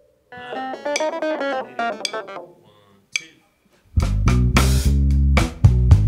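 A song starts out of silence: a plucked guitar plays a quick run of picked notes. About four seconds in, the full band comes in loud, with bass guitar and drums keeping a steady beat.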